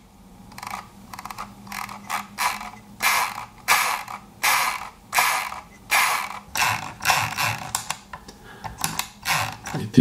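Metal-rimmed scroll wheel of a Logitech M705 Marathon wireless mouse spun again and again with the finger, about one and a half strokes a second. Each stroke is a quick run of ratcheting clicks from the wheel's notched scrolling mode, a bit noisy.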